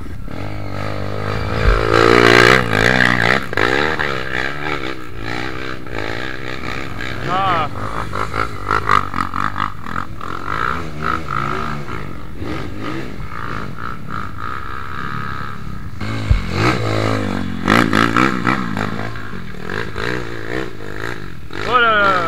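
Dirt bike engines running and revving, mixed with people's voices calling out at times; the loudest bouts come about two seconds in and again near the end.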